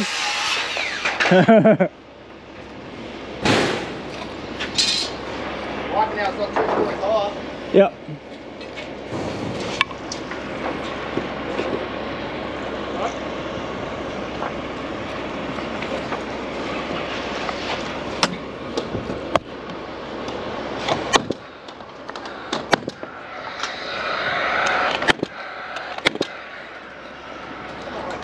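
A few sharp knocks of work on timber roof framing, spaced several seconds apart, over a steady hiss.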